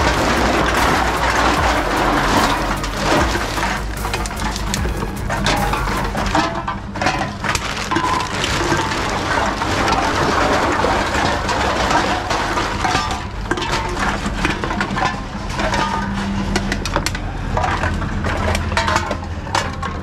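Reverse vending machines taking in drink cans and plastic bottles: a steady machine hum under a continual run of cracks, crunches and clinks as the containers are fed in and crushed.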